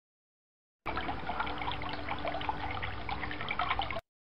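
Water pouring in several streams from a watering-can rose and splashing onto the ground, a cartoon sound effect. It starts suddenly about a second in, runs steadily and cuts off abruptly.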